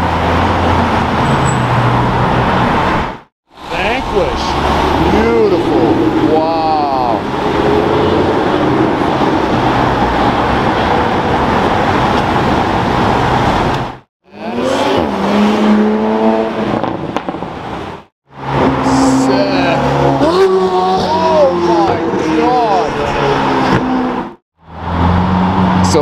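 Car engines in city street traffic over several short clips, split by abrupt cuts to silence: first a Maserati GranTurismo pulling away, then engine notes rising and falling as the cars rev.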